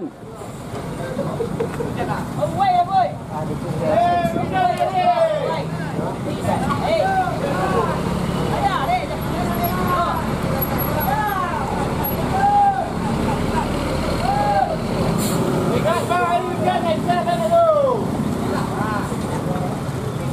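Men calling out repeatedly, their voices rising and falling, over the steady low running of a Hino truck's diesel engine labouring on a steep uphill hairpin.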